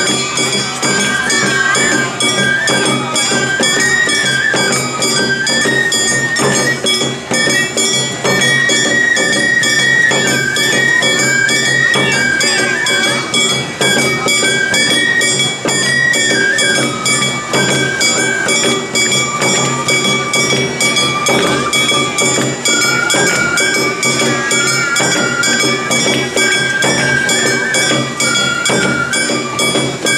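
Awa odori festival music: a high bamboo flute carrying a stepping melody over the steady beat of a ringing hand gong and drums.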